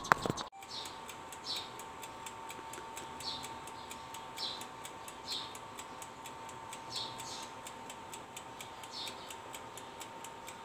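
A brief clatter at the very start, then a running oven's steady hum with fast, faint, regular ticking throughout and a short, falling high chirp about once a second.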